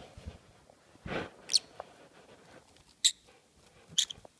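A small pet parrot giving short, high-pitched squeaky chirps, about a second and a half in and again about three seconds in, with a brief rustle of the bed covers just before the first.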